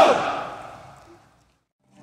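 The end of a formation of soldiers shouting a greeting together in unison, its echo dying away over about a second, then cutting to dead silence.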